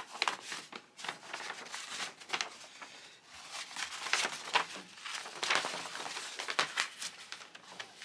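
Sheet of tear-away embroidery stabilizer being pulled off its roll and handled flat on a wooden table, the papery material crinkling and rustling in a quick run of small sounds, busiest about halfway through.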